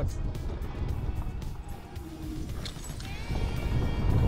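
Background music over a steady low wind rumble on the microphone from riding an electric scooter at about 40 km/h.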